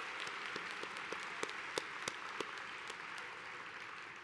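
Audience applauding: a dense, steady patter of many hands clapping, tapering off slightly near the end.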